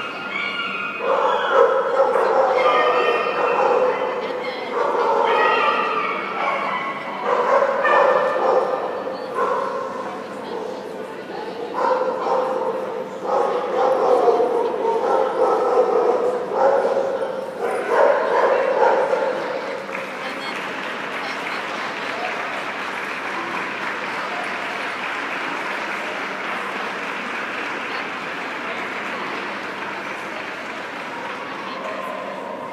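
A dog barking and whining in repeated calls, each a second or two long, for the first twenty seconds or so. After that comes a steady, even noise from the hall.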